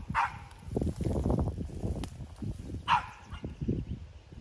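A dog gives two short, high yips, one just after the start and another about two and a half seconds later. Between them there is low rustling and handling noise from plants being picked close to the microphone.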